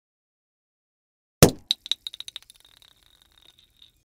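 A small hard object hitting a hard surface once, loudly, about a second and a half in, then bouncing in a run of quickening clinks with a high ring that die away.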